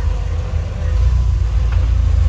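Rock crawler buggy's engine running at low revs while it crawls up over boulders, a steady low rumble.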